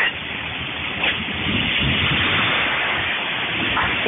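Jeep Cherokee XJ's engine running at low speed as it crawls over creek rocks, a low rumble that builds about a second and a half in, under a steady rushing hiss of water and wind on the microphone.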